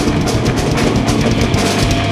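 Live rock band playing loud: electric guitars, bass guitar and drum kit, with the drums hitting in a fast, even rhythm and no vocals.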